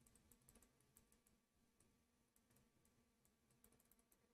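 Near silence, with faint, irregular clicks of a stylus tapping and writing on a pen tablet.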